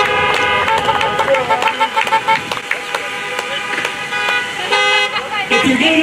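Car horns honking: a quick run of short beeps, about five a second, between one and two seconds in, and a longer blast near the end, over voices shouting and cheering.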